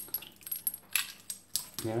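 Empty brass rifle cartridge cases clinking against each other as they are dropped into and shuffled in a hand: a scatter of light, irregular metallic clicks.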